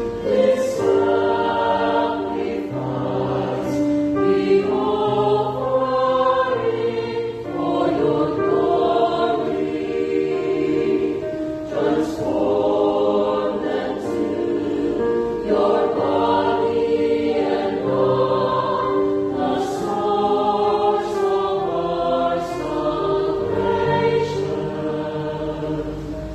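Mixed choir of men's and women's voices singing a slow hymn in parts, with keyboard accompaniment. The music moves steadily through sustained chords.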